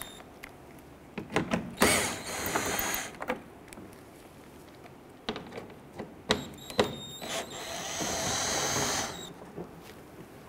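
Cordless power driver spinning a 10 mm socket to back out splash-shield screws, in two short bursts of motor whine about two seconds in and again near the end. A few light clicks come between the bursts.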